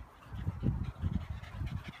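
Dogs running up close to a phone microphone over grass: low, irregular thumps and rumbles, with faint higher dog sounds near the end.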